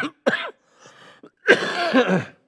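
A man coughing into his hand: a short cough, a faint breath, then a louder, longer cough near the end.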